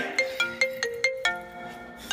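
Mobile phone ringtone playing a short melody of quick plucked-sounding notes, several a second, fading toward the end.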